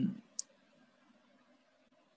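A brief hummed 'mm' from a man, then a single sharp click of a stylus tapping a tablet's glass screen about half a second in.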